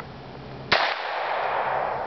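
A single pistol shot about three-quarters of a second in, its report trailing off slowly over more than a second.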